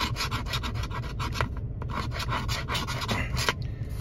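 A coin scraping the latex coating off a scratch-off lottery ticket in rapid back-and-forth strokes, with a brief pause about one and a half seconds in.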